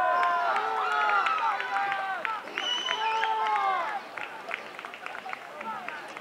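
Several high voices shouting and cheering in overlapping, drawn-out calls, loud for the first four seconds and quieter after, with a few sharp clicks among them.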